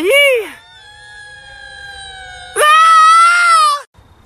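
A person's high, drawn-out wailing cry: faint and held at first, then loud for about a second, ending abruptly.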